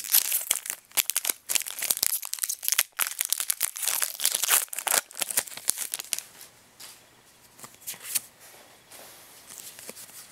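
Foil wrapper of a Pokémon booster pack being torn open and crinkled, a dense loud crackling for about the first five seconds. After that come quieter, scattered rustles and flicks as the trading cards are handled.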